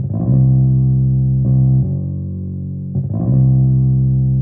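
Electric bass guitar playing a slow, unaccompanied bass line: long held low notes alternating with short notes that slide up the neck, repeating in a steady pattern.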